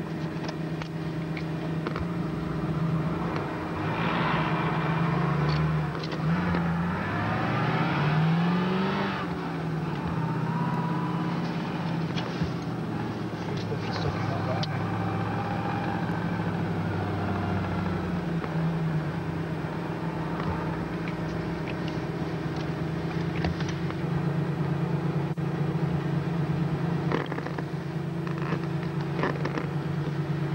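Range Rover engine running steadily while driving through deep snow, its revs rising and falling briefly about seven to nine seconds in.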